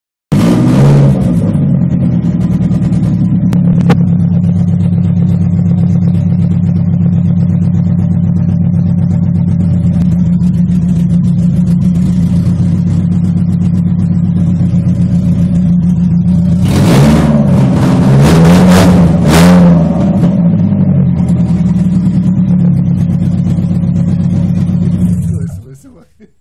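BMW M42B18 1.8-litre twin-cam four-cylinder engine running on its first start after being swapped into the car, idling steadily. It is revved in three short blips around the 17 to 20 second mark, then shut off just before the end.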